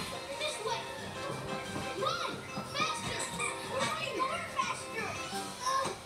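Cartoon soundtrack playing from a television: several high, excited character voices calling out over background music.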